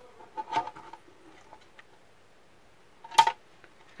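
Handling noises from an opened router circuit board being moved by hand: a soft rustle about half a second in and a brief sharp click about three seconds in, over faint room background.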